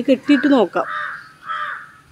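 A crow cawing twice in the second half, two hoarse calls, following a few words of speech.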